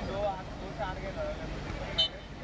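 Several people's voices calling out at a distance, words unclear, over a steady low background hum.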